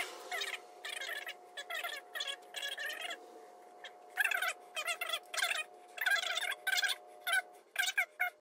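High-pitched, chipmunk-like chatter: talking sped up in a fast-forwarded stretch, broken into short bursts with pauses, over a faint steady tone.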